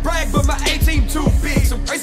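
Hip-hop track playing: a man rapping fast over a heavy bass beat, the deep bass cutting out near the end.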